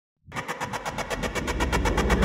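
Electronic logo-intro sound effect: a rapid, even rattle of about ten clicks a second over a deep rumble that builds, starting a quarter second in.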